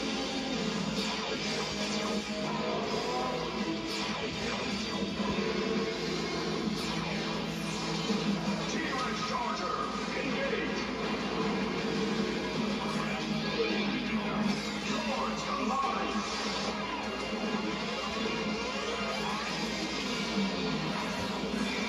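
Television soundtrack of a robot-combining sequence: action music with crashing sound effects, played through a television's speaker.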